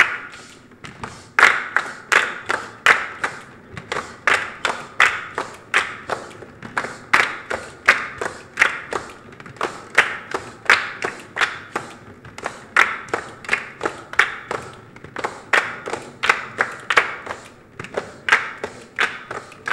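Children's choir clapping hands together in a rhythmic body-percussion pattern, the sharp claps falling in repeating groups of about three to four a second.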